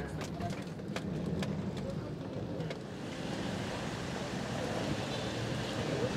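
Low rumble of a van's interior with a few knocks and clicks. About halfway it gives way to a steady hiss of wind and street noise outdoors.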